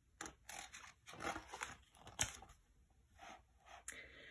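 Page of a picture book being turned by hand: faint paper rustling and scraping in a series of short soft swishes, the loudest a little past the middle.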